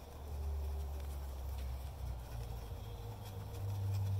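Microfiber cloth rubbing polish on a bare aluminum panel, faint, over a steady low rumble.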